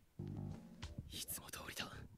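Anime episode audio played at low volume: background music with a character speaking Japanese dialogue over it, about halfway through.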